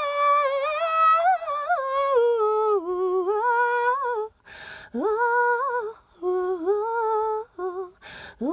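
A woman's solo voice singing a slow, unaccompanied melody. A long held phrase is followed by shorter phrases, with breaths audible between them.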